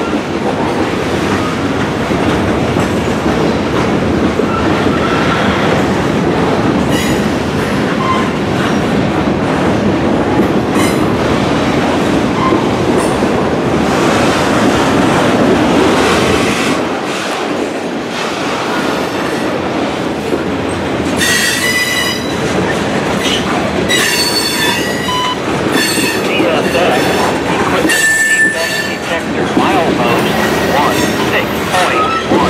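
A loaded freight train of covered grain hoppers rolling past at speed, a steady dense rumble of steel wheels on rail. In the last third, freight car wheels squeal in high ringing tones, several times over.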